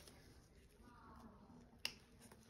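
Near silence, then a single sharp click near the end as the lid of a jewellery box is opened.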